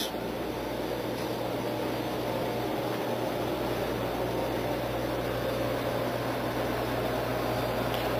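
Vitronics XPM3 820 reflow oven running: a steady rush of air from its convection fans over a constant low hum.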